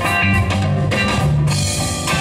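Live band playing a funk-blues song, with electric guitar, bass guitar and drum kit.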